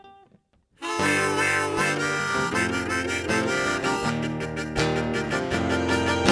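A live rock band starts a song about a second in: strummed acoustic guitar, bass and band, with a reedy, harmonica-like lead melody on top. A few faint plucked guitar notes come just before the band starts.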